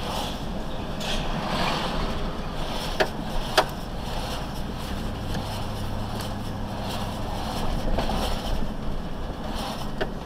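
Engine hum and road noise inside a moving vehicle's cab, picked up by a dash camera, with two sharp clicks a little over half a second apart about three seconds in.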